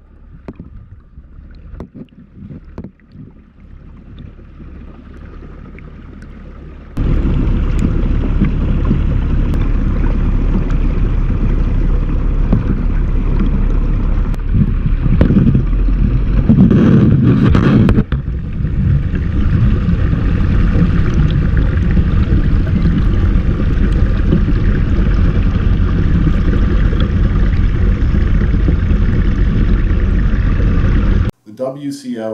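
Water churning and bubbling in a trout stocking truck's aerated tank, heard underwater as a muffled low rumble. About seven seconds in it jumps suddenly much louder and stays loud.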